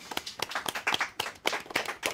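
A small group of people clapping their hands, many quick uneven claps overlapping.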